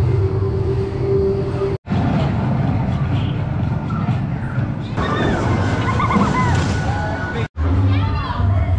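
Outdoor theme-park background sound in three short clips separated by sudden cuts: first a steady hum with a held tone, then a general rush of outdoor noise, then distant voices calling over the noise.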